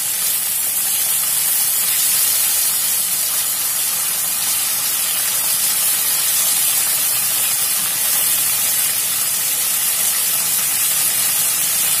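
Beef short ribs sizzling steadily in hot oil in a wok as they are seared and turned over with tongs.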